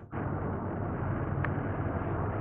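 Steady car engine and road rumble heard from inside a moving car, after a short click at the start.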